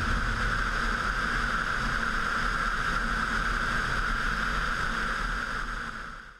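Steady rushing airflow noise from a glider in flight, picked up by a camera mounted on the airframe, fading out near the end.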